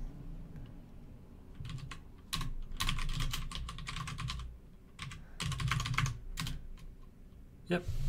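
Typing on a computer keyboard in runs of rapid keystrokes: a short burst about two seconds in, a longer run from about two and a half to four and a half seconds, and another from about five and a half to six and a half seconds in.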